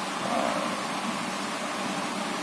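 Steady background hiss of room noise with no speech, with a faint brief sound about a quarter second in.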